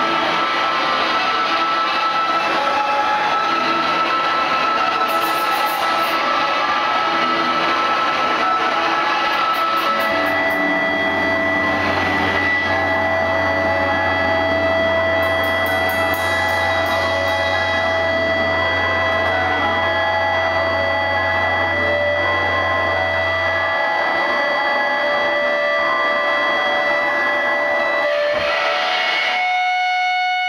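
Live noise-rock guitar played as a loud, steady wall of distorted noise, with long held feedback tones that change pitch a few times. A low drone joins about ten seconds in and cuts off about fourteen seconds later.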